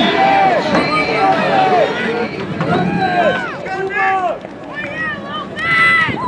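Several voices shouting and cheering over one another, swelling about three seconds in and again near the end.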